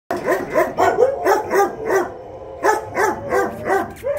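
A dog barking in a fast run, about four barks a second, with a short pause about halfway through before the barking starts again.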